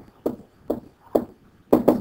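Stylus tapping and ticking on a writing screen during handwriting: a series of short, sharp taps about half a second apart, with a slightly heavier cluster near the end.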